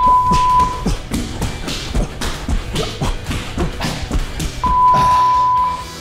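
Workout interval timer beeping: one steady high beep about a second long at the start, marking the start of a five-second work interval, and a second identical beep near the end, marking the switch to rest. Background music with a steady beat plays throughout.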